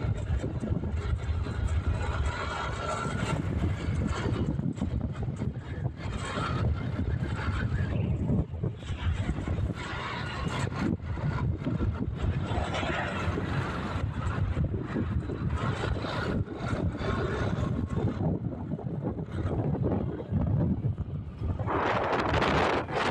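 Wind buffeting the microphone on a moving motorcycle, gusting unevenly, over the low running noise of the bike and its tyres on the road. It gets louder again near the end.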